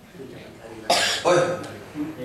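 A man coughs once, sharply, about a second in, followed by a short spoken "oh".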